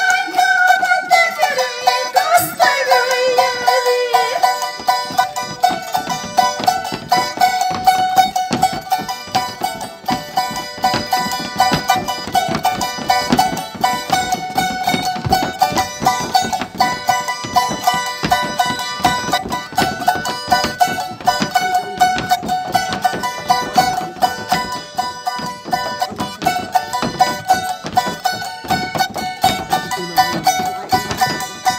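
Folk music on a small, bright-toned strummed guitar, played in a fast, steady rhythm. A woman's singing line at the start ends in a falling glide about four seconds in, and the strings then play on alone.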